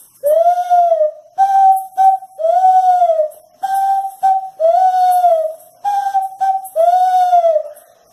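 Handmade wooden bird call (pio) blown to imitate the coo of the picazuro pigeon (asa-branca): a repeating phrase of a long note that rises and falls, then a shorter level note in two parts, about four times over.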